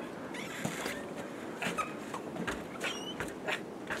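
Footsteps crunching in fresh snow as a person steps out onto snowy front steps, over a faint outdoor hush, with a few short high chirps in the background.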